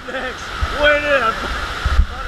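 Steady rush of water from a FlowRider sheet-wave surf machine, with a person's voice calling out twice over it, the second call long and drawn out.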